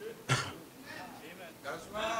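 A short throat-clearing cough, once, about a third of a second in, followed by faint murmured voices in a large room.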